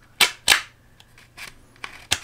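Two loud, sharp plastic clicks about a third of a second apart near the start, then a few fainter clicks. The white plastic fit cradle inside the HJC Bellus bicycle helmet is being snapped and worked by hand.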